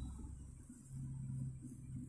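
Quiet room tone with a faint low hum that fades and returns about a second in.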